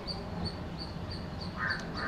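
Faint harsh bird calls near the end, over a quiet background with a thin high chirp repeating about four times a second.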